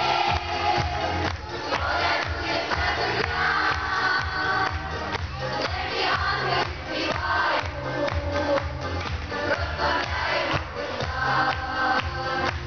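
Children's choir singing to a recorded backing track with a steady beat and bass line.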